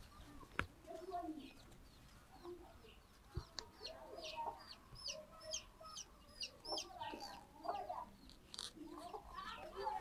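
Faint bird calls: a run of quick, high, downward chirps several times a second from about three and a half seconds in to about eight seconds, over scattered lower calls.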